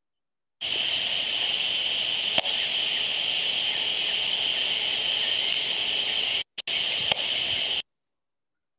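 Audio output of an HF35C RF analyzer held up to a smart electricity meter, turning the meter's radio transmissions into sound: a steady hiss with a strong high band. There is a sharp click a couple of seconds in and another near the end, where the sound briefly cuts out.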